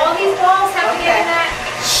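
Speech only: voices talking, with no other distinct sound.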